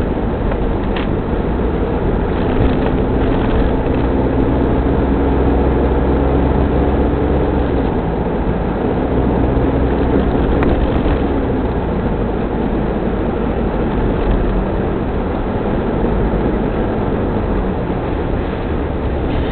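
Engine and road noise heard from inside the cabin of a Mitsubishi Pajero 4x4 on the move, a steady low rumble with an engine note that holds, drops away briefly, returns and then fades.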